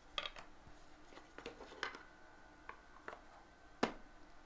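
Trading cards and a small cardboard pack box being handled: a scatter of light clicks and rustles, the sharpest a little before the end.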